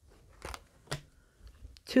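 Tarot cards handled and drawn from a deck: two sharp snaps, about half a second and a second in.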